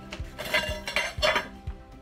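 A few light clinks of a hard hand tool against ceramic floor tile, over background music with a steady beat.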